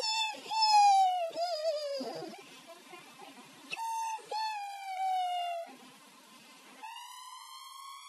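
A girl's voice holding three long, high-pitched notes: the first slides down with a wobble, the second slides down more smoothly, and the last slowly rises.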